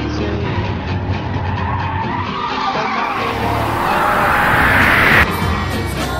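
Car driving with tyres skidding, over music. The skid noise rises in pitch and loudness from about halfway through and cuts off suddenly near the end.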